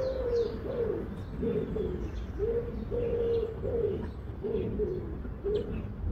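A dove cooing, a run of short, slightly falling coos repeated about every half second, with small birds chirping faintly and higher in pitch.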